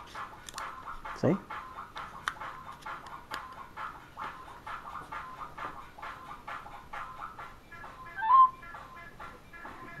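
Pentax Optio RZ18 compact digital camera's startup chime as it powers on: a short, loud electronic warble near the end. It comes after a few small plastic clicks from its battery door being handled and shut.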